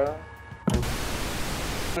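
A loud, steady static-like hiss that starts suddenly about two-thirds of a second in and runs for over a second.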